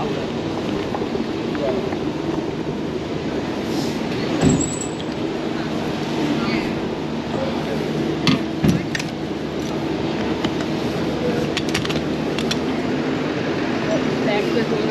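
Road traffic around a cyclist: a steady engine hum with the rush of passing vehicles, and sharp knocks about four and a half and eight and a half seconds in.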